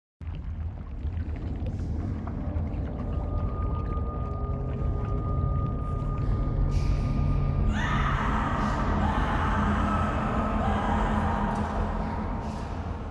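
Ominous horror-style intro sound bed. A deep sustained rumble starts abruptly, a thin steady high tone comes in about three seconds in, and around eight seconds in the sound swells fuller and brighter.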